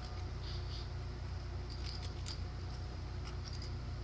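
Faint, scattered clicks of clay poker chips being handled at the table, over a low steady hum.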